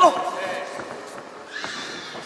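A gloved punch landing with a sharp smack right at the start, together with a short, loud, falling cry. After it come shouted voices from the corners and the crowd.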